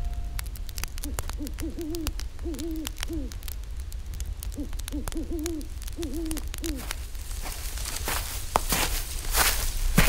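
Owl hooting in two runs of short, arched hoots, over a steady low rumble and scattered crackling clicks. Louder rustling noises come in during the last two seconds or so.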